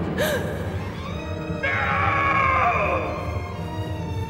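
Film soundtrack: a music score with a man's gasp about half a second in. From about a second and a half in, a loud, drawn-out cry falls in pitch and lasts over a second.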